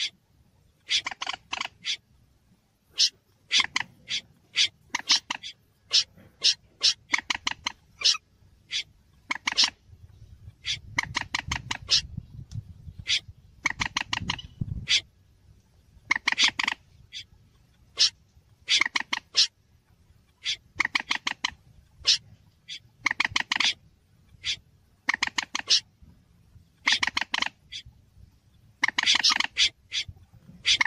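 Recorded wetland-bird calls of a moorhen and a snipe, played as a bird-trapping lure: short, harsh calls in quick clusters, repeated every second or two. A low rumble sits underneath for a few seconds in the middle.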